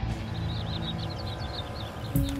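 Small birds twittering in a run of quick, high chirps over a low, steady background music drone.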